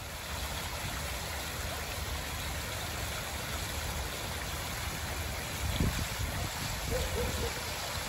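Pond fountain: water spouting from a stone sculpture and splashing down into the pond, a steady rushing splash. A brief low rumble comes near six seconds in.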